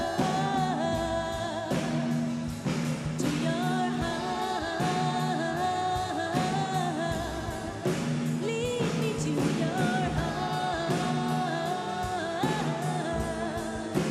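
Live band playing a pop song with a singer, the voice carrying the melody over a keyboard and a steady drum beat.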